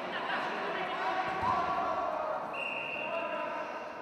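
Overlapping voices calling out in a large, echoing sports hall, with a low thud about a second and a half in and a brief steady high tone a little after the middle.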